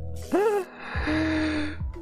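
A man laughing: a short gasp with a sharply rising pitch near the start, then a long breathy, wheezing stretch of laughter. Under it runs a background music beat with a steady kick drum.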